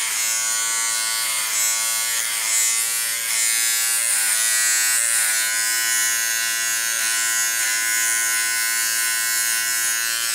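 Small Wahl electric hair clipper with a number three guard buzzing steadily as it is run up the nape through the hair, its pitch wavering slightly now and then.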